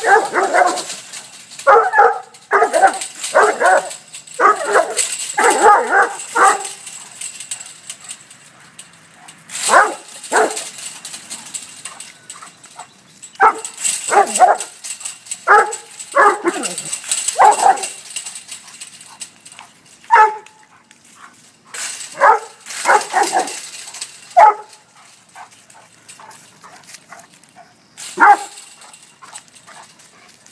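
Central Asian Shepherd dog (Alabai) barking at a ram through a chain-link fence: a rapid run of barks over the first few seconds, then shorter groups of barks separated by pauses of a few seconds.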